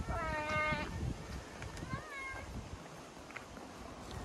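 A child's high-pitched wordless call, held for almost a second, then a shorter call that rises and falls in pitch about two seconds in, over a steady low rumble of wind on the microphone.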